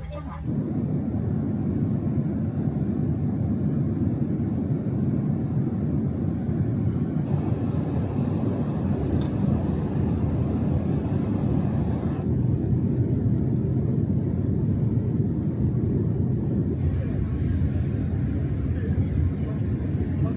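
Steady low roar inside the cabin of a Boeing 787 airliner in flight: engine and airflow noise. Its tone shifts slightly a few times along the way.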